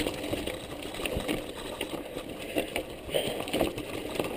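Mountain bike rolling down a rocky singletrack: tyre noise on dirt and stone with frequent small knocks and rattles from the bike.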